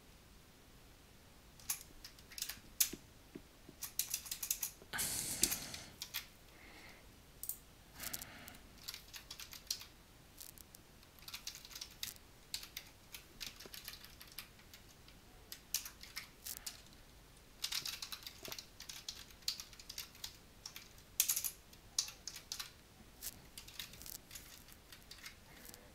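Typing on a computer keyboard: irregular bursts of key clicks, starting about two seconds in.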